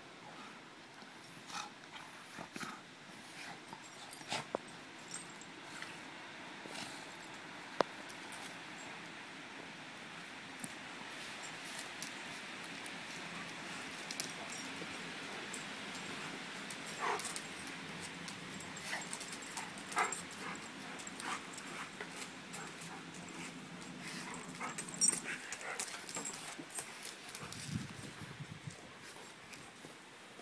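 Two dogs play-wrestling on paving: scattered short scuffling clicks and occasional dog vocal sounds, busiest in the second half.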